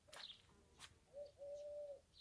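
Faint dove cooing: a short coo a little past halfway, then a longer held coo. A few faint clicks come before it.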